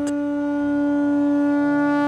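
A conch shell (shankh) blown in one long, steady note.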